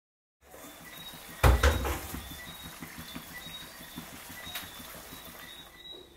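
A pot of fish stewing in sauce under a glass lid, with a soft steady simmering crackle. A heavy double knock comes about a second and a half in, and a sharp click a few seconds later.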